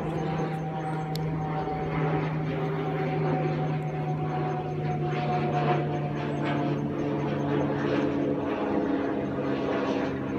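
An engine running steadily, its pitch shifting a few times, with a new, somewhat higher tone coming in about two-thirds of the way through.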